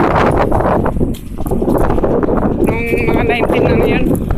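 Wind buffeting a handheld phone's microphone while walking, with footsteps on paving. A brief wavering pitched sound comes in about three seconds in.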